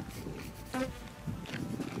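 Small flies buzzing close to the microphone.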